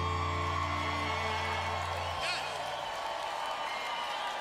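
A live band's final held chord rings out and cuts off about two seconds in, leaving the crowd cheering and applauding, with a whoop.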